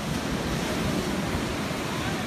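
Storm-driven sea surf rushing and breaking against the shore, a steady roar of churning water, with wind buffeting the microphone.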